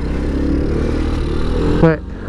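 Boom Vader 125cc single-cylinder four-stroke engine pulling in first gear, its note rising slightly as the bike picks up speed.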